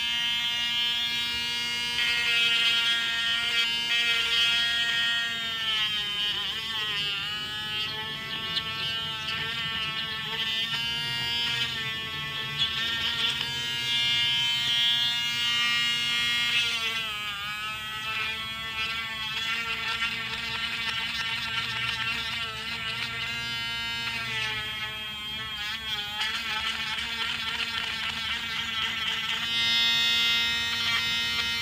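Handheld BEF mini rotary tool running with a thin drill bit while boring a hole through a piece of grey plastic pipe. Its steady buzzing whine sags in pitch several times as the bit bites into the plastic, then recovers.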